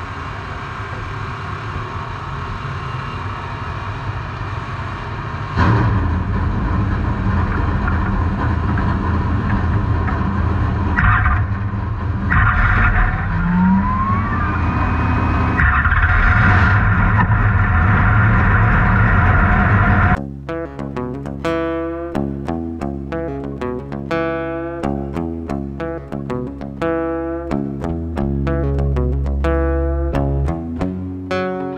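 Dirt late model race car engine running, heard from inside the car, stepping louder about six seconds in and again later. About two-thirds of the way through it cuts abruptly to background music with plucked guitar.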